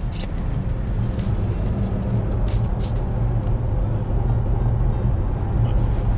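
Road and engine noise inside a car's cabin at motorway speed: a steady low rumble with a hiss of tyres and wind over it.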